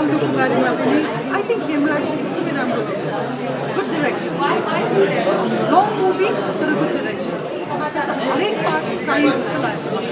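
Speech only: a woman talking, over the chatter of many other voices in a crowded hall.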